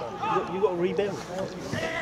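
Men's voices talking close to the microphone, the words indistinct.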